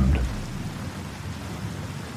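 Steady rain falling, with a low rumble of thunder dying away in the first half second.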